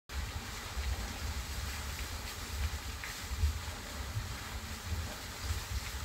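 Wind buffeting the microphone outdoors: a low, uneven rumble that swells and drops throughout, over a faint steady hiss.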